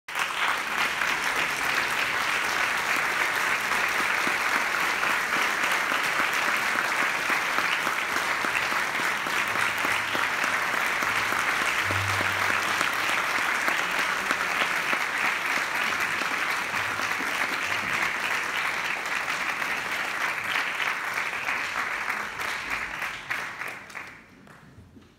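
Audience applauding steadily in a large concert hall, the applause dying away over the last couple of seconds.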